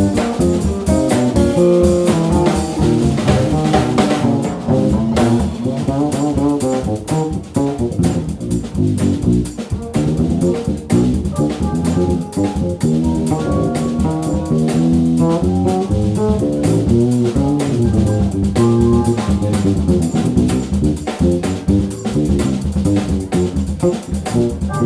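Live jazz-groove trio playing: an electric guitar runs a melodic line over a drum kit keeping time on drums and cymbals.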